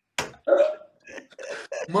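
A man making short non-word vocal sounds: a sharp mouth click just after the start, then a brief voiced sound about half a second in and a few faint fragments before talk resumes.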